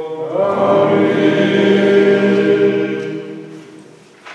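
Male voices singing Orthodox liturgical chant, one long sustained phrase that starts about a third of a second in and fades away near the end.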